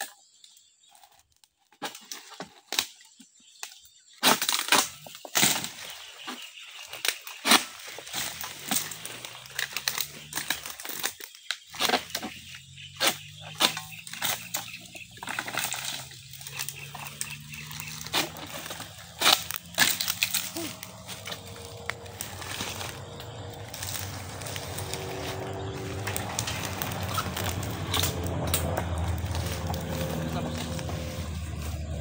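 Repeated sharp cracks and knocks of a long-pole harvesting sickle (egrek) hacking and tugging at the fibrous bases of oil palm fronds, with crackling and rustling of the fronds between strokes. From about ten seconds in, an engine hum rises and grows steady, covering the last part.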